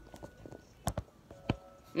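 A few faint knocks and taps from hands handling an object right at the microphone: two close together about a second in and one more half a second later.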